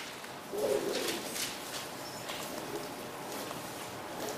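Thin Bible pages rustling and turning in a few soft flicks, with a brief low hum about half a second in.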